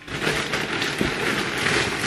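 Plastic shopping bag and packaging rustling and crinkling as groceries are handled. The sound starts abruptly and keeps up a dense crackle.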